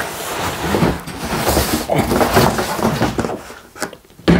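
Cardboard scraping and rubbing as a hard plastic case is slid up and lifted out of a large shipping box, with a sharp knock near the end.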